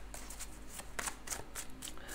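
Tarot cards being shuffled by hand, a string of light, irregular card clicks and slides.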